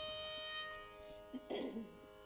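Steady Carnatic drone from an electronic tanpura, holding the tonic between pieces, with a short, louder, noisy sound about one and a half seconds in.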